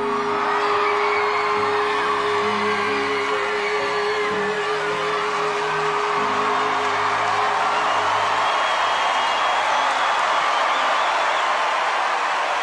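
A singer holds a long final note over sustained orchestral backing chords. The note fades out about halfway through, while a large audience cheers and whoops over the music.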